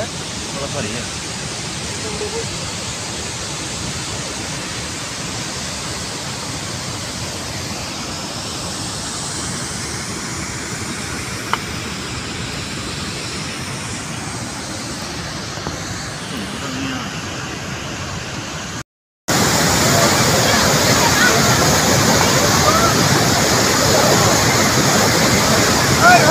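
Steady rushing of mountain water running down a rocky slope. A cut about 19 seconds in brings a louder, brighter rush from a fast glacial river, with faint voices over it.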